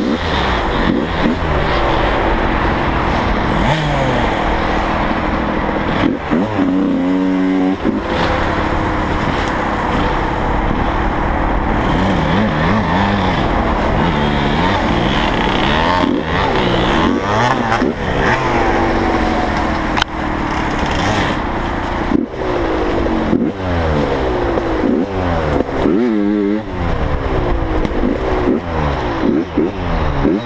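Dirt bike engine revving hard off-road, its pitch rising and falling again and again as the throttle is opened and closed, heard close up from the bike.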